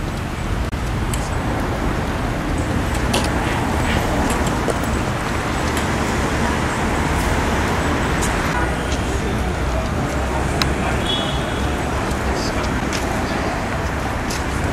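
Outdoor ambience: steady road-traffic noise with a low rumble, scattered small clicks and voices in the background.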